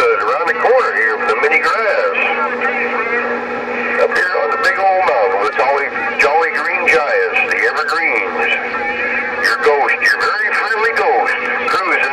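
Incoming radio chatter from a Uniden Grant LT CB radio's speaker on channel 11 (27.085 MHz): several distant voices overlapping, unintelligible, with crackles of static and a steady low tone in the first few seconds.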